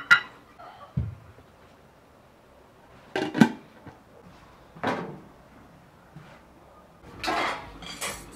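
Kitchen clatter of metal cookware. A ceramic plate clinks into an aluminium pot, then there is a low knock. The pot clanks down on a sheet-metal stove top, followed by another knock and a longer rattle of metal bowls near the end.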